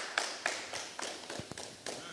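A string of irregular sharp taps, about four a second, growing fainter.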